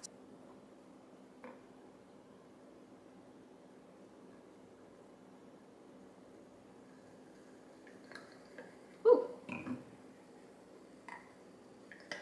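A mostly quiet room with a faint steady hum. About eight to eleven seconds in come a few light clicks and two short sputters that fall in pitch, as blue curaçao syrup is squeezed from a plastic squeeze bottle into a champagne flute.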